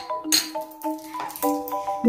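Background music: a light, bouncy melody of short mallet-struck notes, in a marimba-like tone.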